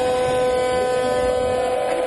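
A steady, horn-like tone held for a few seconds and fading near the end, over the noise of an arena crowd.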